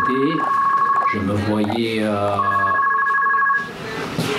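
A steady electronic tone of two pitches sounding together, heard twice for about a second each, under a man speaking in French.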